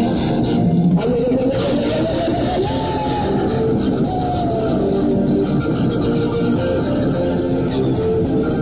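Andean folk band playing live: a harmonica carries the melody, with notes that slide up and then fall away, over plucked strings and a steady rhythm.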